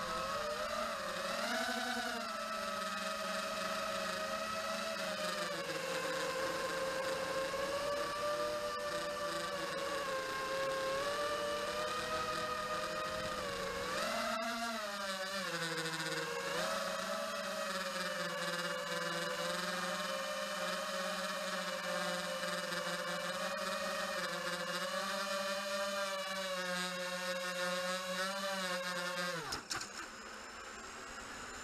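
Eachine Wizard X220 racing quadcopter's four brushless motors and propellers whining in flight on a 4S battery, heard from a camera on board. The pitch rises and falls with the throttle, and the sound cuts off suddenly near the end as the quad lands and the motors stop.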